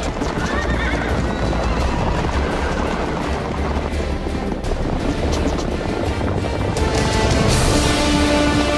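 Galloping horses in a cavalry charge, hooves pounding, with a horse whinnying about half a second in, all under loud film-score music.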